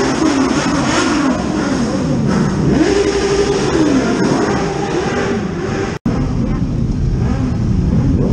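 Several motorcycle engines revving, their notes rising and falling and overlapping, echoing in a stone tunnel. About six seconds in the sound drops out for an instant, and the engines carry on after it.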